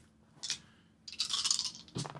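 Game pieces handled on a tabletop playmat: a short scrape about half a second in, then nearly a second of rustling as a card or piece slides, ending in a sharp click.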